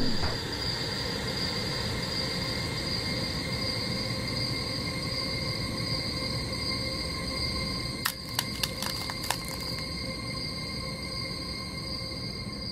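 Steady ambient drone from the music video's closing scene after the song has ended: a low rumbling bed with several held high tones over it. A quick run of sharp clicks comes about eight to nine seconds in.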